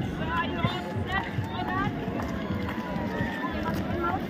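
Crowd chatter: many people talking over one another at once, over a steady low rumble.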